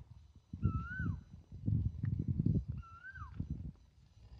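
An animal's high whistled call that rises and then falls, heard twice, over a low irregular rumble.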